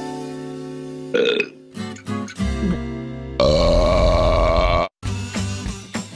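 A long cartoon burp over background music, starting about three and a half seconds in, lasting about a second and a half and cutting off suddenly.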